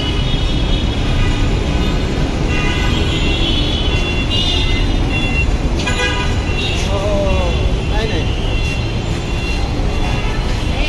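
Busy street traffic: a steady rumble of passing vehicles with horns tooting several times around the middle, and voices in the background.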